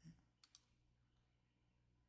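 Near silence broken by two faint, quick clicks about half a second in, a tenth of a second apart: computer clicks as the on-screen document is advanced to the next page.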